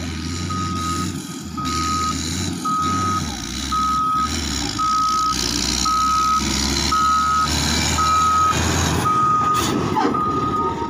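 Reversing alarm of a Caterpillar motor grader beeping about once a second as it backs up, over the steady running of its diesel engine. Both grow a little louder as the machine comes closer.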